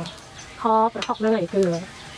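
A metal spatula stirring food in a steel wok, scraping and clinking against the pan, with one sharp clink about a second in. A woman's voice speaks over it for part of the time.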